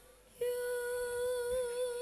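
Background music: after a brief gap, a single held note begins about half a second in and sustains with a slow, wavering vibrato.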